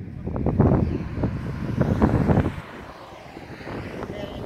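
Wind buffeting the microphone in irregular gusts, heavy and rumbling for the first two and a half seconds, then dropping to a softer rush.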